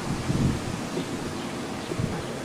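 Low rumble of wind on the camcorder microphone, swelling about half a second in.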